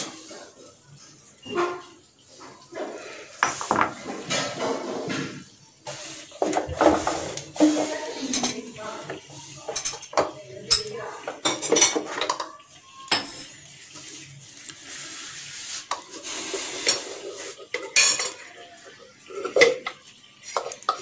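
Irregular knocks, scrapes and clatter of a plastic food-chopper bowl, a plate and a spoon being handled as minced chicken mixture is scooped out of the chopper.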